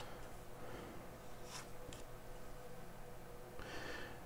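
Faint, soft sounds of tarot cards being handled and laid on a marble tabletop: two light card ticks about a second and a half in, and a brief rustle near the end, over a faint steady hum.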